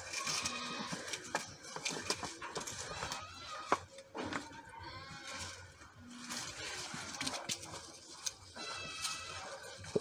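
Faint outdoor background with a few soft knocks and rustles, the sharpest about four seconds in, and faint pitched calls.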